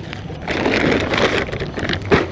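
Small clear plastic bags filled with black soil being handled: a dense rustling, crackling crinkle of plastic and loose soil, starting about half a second in and lasting roughly a second and a half.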